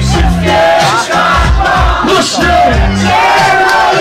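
Hip-hop beat from a club sound system with a deep bass pulse, and a crowd shouting and yelling over it.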